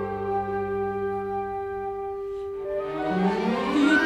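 Orchestral accompaniment to a Yiddish lullaby, between sung phrases: a held chord, then a rising line of notes about three seconds in.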